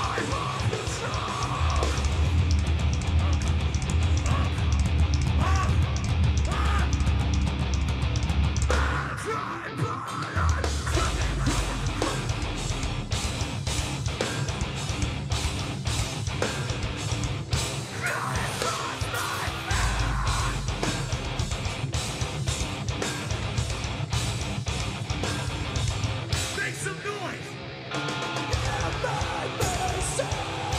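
Live metalcore band playing: distorted electric guitars through Mesa amp stacks, bass, and a pounding drum kit, with screamed vocals in places. The music thins briefly about ten seconds in and again just before the end.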